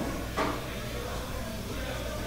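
Pool hall background noise with a steady low hum, and one short sharp knock about half a second in.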